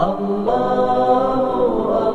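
Voices chanting a drawn-out Islamic dhikr of 'Allah', holding long sung notes that slide in pitch, with a new phrase rising in about half a second in.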